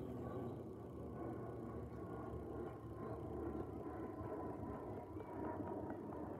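Learjet business jet passing high overhead: a faint, steady low rumble of its jet engines.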